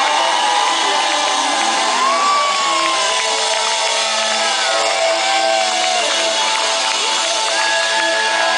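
Live rock band playing, with electric guitar lead lines holding long notes and bending them up and down over the drums and rhythm parts, recorded loud from the audience.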